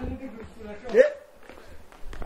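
Only speech: a single short shout of "hey" about a second in, over faint background.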